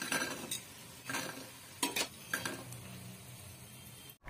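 Steel slotted spoon clinking and scraping on a ceramic plate as fried bondas are tipped onto it: a few short, separate knocks over the first couple of seconds, then near quiet.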